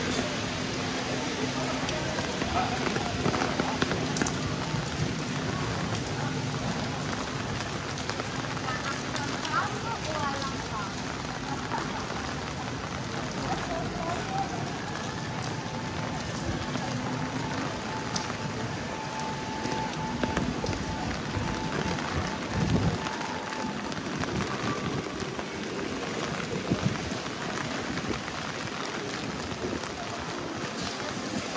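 Steady rain falling on wet city paving, an even hiss throughout. A brief low thump comes about three-quarters of the way through.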